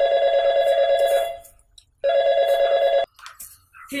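A telephone ringing twice: one ring that fades out a little over a second in, then after a short pause a second ring that cuts off abruptly about three seconds in.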